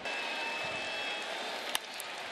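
Steady murmur of a ballpark crowd, then near the end a single sharp crack of a baseball bat hitting the pitch for a ground ball.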